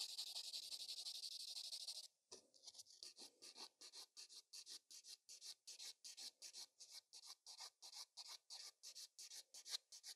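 Sponge nail buffer block scuffing the shiny black gel surface of a nail tip, faint scratching strokes, to roughen it before the next layer. Continuous for about two seconds, then after a short pause it turns to quick, even back-and-forth strokes about five a second.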